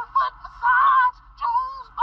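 Computer-synthesised singing from a commercial jingle, played through a laptop's small speaker so it sounds thin and tinny with little bass: a few short sung syllables, then a longer held phrase near the middle.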